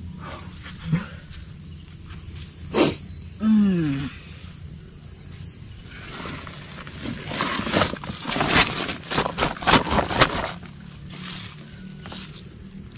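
Insects buzzing steadily throughout. A short, falling voice-like grunt comes about three and a half seconds in. From about seven seconds a run of rustles and knocks follows as large snakehead fish are handled and dropped into a fabric shopping bag.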